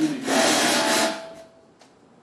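A loud rustling, rubbing noise on the speaker's microphone, lasting about a second before it fades. A faint click follows near the end.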